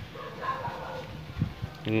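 A dog calling faintly in the background, one short call about half a second in.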